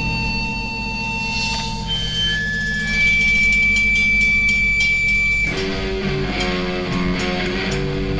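1980s Japanese punk rock recording: electric guitar holding long high notes over a low bass drone, then moving into chords about five and a half seconds in.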